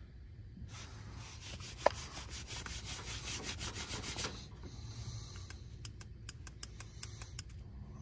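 A WetSwitch condensate flood sensor being rubbed quickly back and forth against a fabric knee pad to dry its soaked sensor, in a fast run of strokes lasting about three seconds, followed by a few scattered light clicks of handling.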